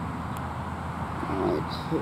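A steady low hum, with a short murmured human voice about a second and a half in.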